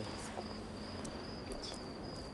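Crickets chirping in a steady, high-pitched continuous trill, with a few faint brief clicks.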